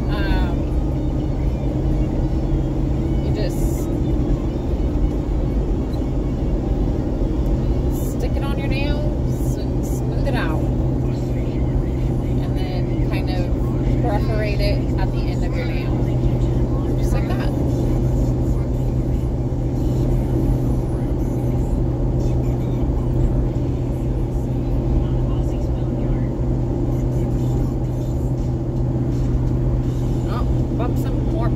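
Steady road and engine noise inside a moving car's cabin: a constant low hum under an even rush.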